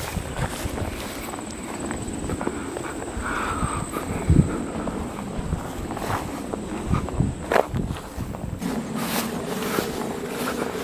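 Footsteps of a person walking through grass and dry marsh vegetation, with the handheld microphone picking up uneven rumbling and a few clicks. A faint thin high whine runs through the first four seconds or so.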